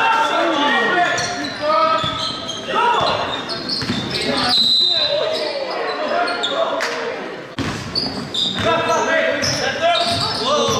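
Sneakers squeaking on a hardwood gym floor, a basketball bouncing and players calling out. A referee's whistle sounds once about halfway through, stopping play for a foul.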